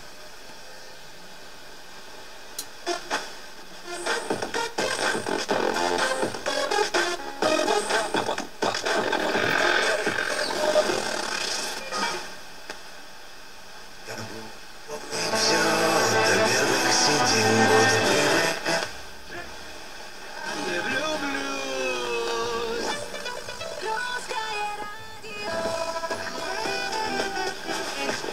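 Belarus-59 tube radiogram's receiver being tuned across the VHF band through its speakers: a soft steady hiss for the first few seconds, then broadcast music and talk that change several times as the dial is turned.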